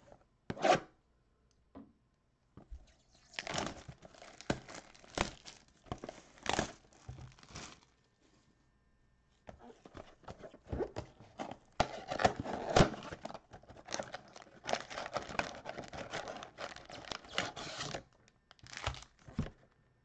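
Plastic shrink wrap being torn and crumpled off a cardboard Donruss football trading-card mega box as it is unwrapped and opened. The crinkling comes in irregular spells, with a pause of about a second and a half in the middle.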